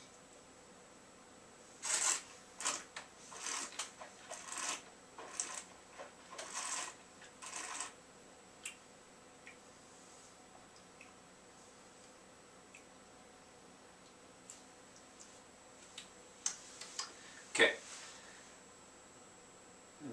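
A wine taster slurping air through a mouthful of white wine to aerate it: a string of short, hissy slurps over several seconds. Then a long quiet stretch, with a few faint clicks and one sharper mouth or breath sound near the end.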